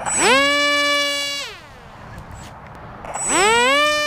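Small brushless electric motor of an RC flying wing driving a 6x4 pusher prop. It is throttled up to a steady whine for about a second and back down as a pre-launch check, then spun up again about three seconds in for the hand launch. A thin high whine runs alongside each run.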